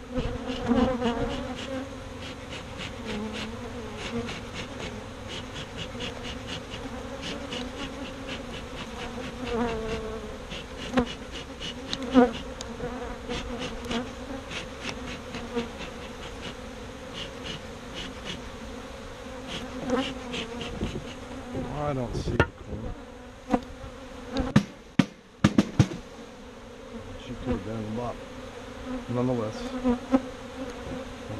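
Honey bees buzzing in a steady hum around a screened wooden box crowded with bees, with scattered clicks as the box is handled. A run of sharp knocks comes about three quarters of the way through.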